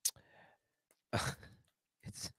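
A man's short, breathy laugh: a soft breath at the start, then a brief exhaled chuckle about a second in.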